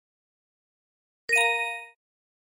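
A single bell-like ding sound effect, about a second and a third in, ringing briefly with several bright overtones and cut off after about half a second. It signals the next vocabulary word's Korean meaning appearing on screen.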